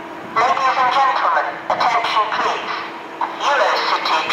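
Station public-address announcement from platform loudspeakers: a recorded voice speaking in phrases, over a faint steady hum.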